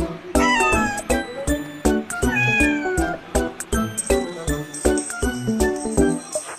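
Background music with a steady, tinkling beat, over which a cat meows twice, each meow falling in pitch: once about half a second in and again a little after two seconds.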